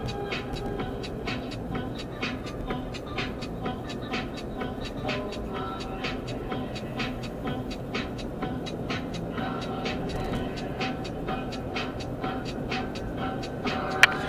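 A dog panting quickly inside a moving car, about three short breaths a second, over the steady rumble of road and engine noise in the cabin.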